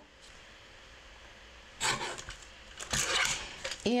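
A small sliding-blade paper trimmer cutting a thin strip off cardstock, the blade drawn along the rail in two short passes about a second apart.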